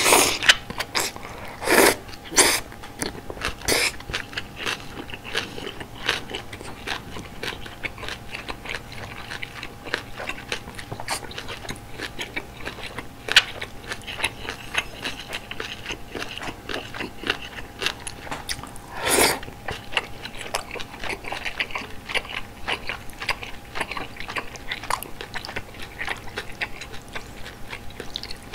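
Close-miked ASMR eating of malatang: steady wet chewing with many small crisp crunches from bean sprouts, broken by a few louder slurps and bites, one near the start and another about 19 seconds in.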